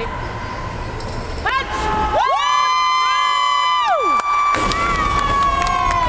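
A few spectators shouting long, high-pitched yells of encouragement for a weightlifter during a lift. A single thud just past the middle is the barbell coming down onto the platform.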